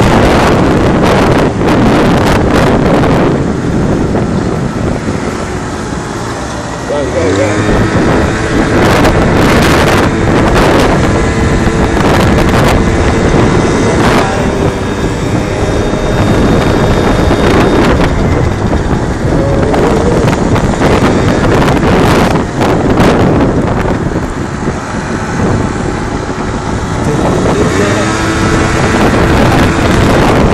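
Wind buffeting the microphone of a moving moped, with the scooter's small engine running beneath it. The engine's pitch rises as it speeds up about seven seconds in and again near the end.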